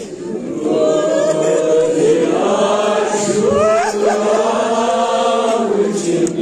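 Nauha, the Shia lament for Muharram, chanted by a group of voices together, led by a boy on a microphone, in long held lines with sliding pitch.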